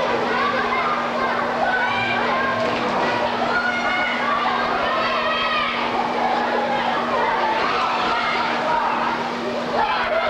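Many young voices chattering and calling out over one another in an indoor swimming pool hall, with no one voice standing out. A steady low hum runs underneath.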